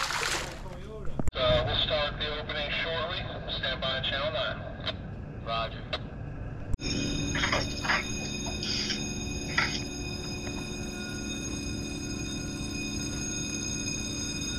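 A snook dropped back into the water with a short splash, followed by indistinct voices talking. About seven seconds in, the sound changes abruptly to a steady hum of several pitches that carries on to the end.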